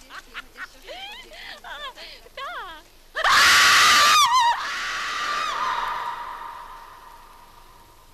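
High-pitched shrieks and short cries from several voices. About three seconds in comes a loud, drawn-out scream over a rushing hiss; the scream falls in pitch and then trails off, fading away over the next few seconds.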